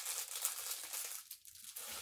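Soft crinkling and rustling, as of packaging being handled, with fine small crackles.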